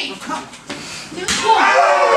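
One sharp slap of a strike landing on a wrestler, about a second and a half in, followed at once by voices shouting.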